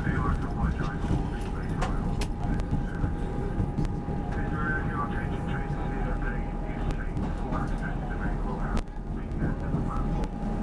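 Passenger train running at speed, heard from inside the carriage: a steady low rumble of wheels on rail with a constant whine and a few sharp clicks. Faint passenger voices sit underneath.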